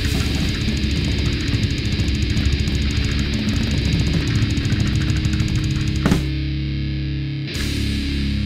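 Heavy metal band playing with distorted electric guitars, bass and fast drumming. About six seconds in the drums drop out and a low distorted chord rings out, struck again near the end.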